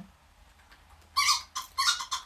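Dog-toy ball sounding as it is squeezed in the hands: two short, high-pitched squeaky calls a little over a second in, after a quiet start.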